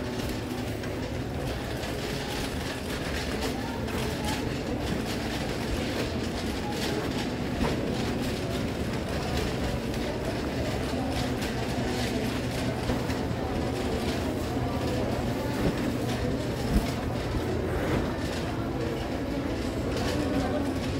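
Metal shopping cart rolling across a hard store floor, its wheels and wire basket rattling steadily, with a sharper knock about three seconds before the end.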